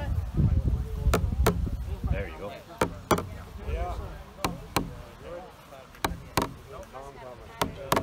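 Large rawhide hand drum struck with a beater in pairs of beats, like a heartbeat, about one pair every second and a half.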